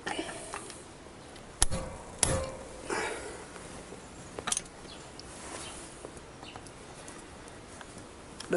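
A hammer striking a screwdriver set in a seized, corroded carburettor screw: two sharp knocks under a second apart, the second with a short metallic ring, then a few lighter knocks and handling noises.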